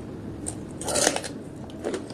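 Close-miked bite into a raw red onion, with a loud crisp crunch about a second in, followed by chewing.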